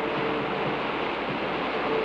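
Steady rush of breaking surf on a film soundtrack, with faint held notes of background music underneath.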